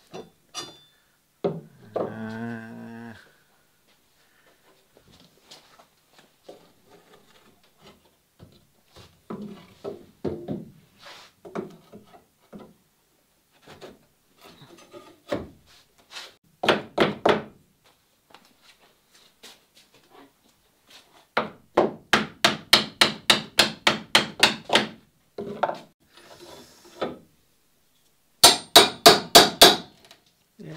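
Hand tools working a wooden boat hull loose from its building jig where glue has stuck it to the stringers: a short wooden creak about two seconds in, scattered knocks, then two runs of quick hammer strikes, about four or five a second, near the end.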